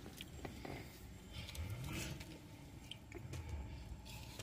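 Faint handling noise of a wrapped sandwich being pulled open by hand: soft rustles and small crackles of the paper wrapper.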